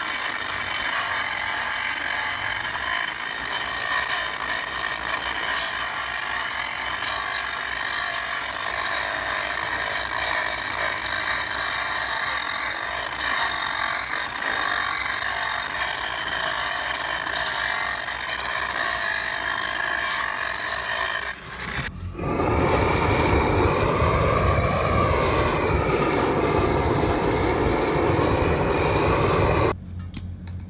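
A large DeWalt angle grinder grinding a steel pipeline joint, a steady high whine over a gritty grinding noise. About two-thirds of the way through it breaks off briefly and comes back louder, its pitch wavering as the disc is worked against the pipe.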